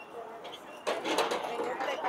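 People talking on a busy city sidewalk. A louder, closer stretch of talk begins about a second in.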